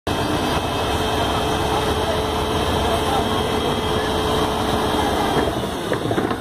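FAUN Rotopress garbage truck running, a steady low rumble with a steady hum over it that stops shortly before the end.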